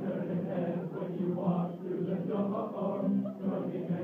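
A large group of young men singing together a cappella, their low voices in one continuous chorus.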